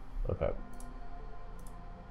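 Two sharp computer mouse clicks, about a second apart, as settings are clicked in the software.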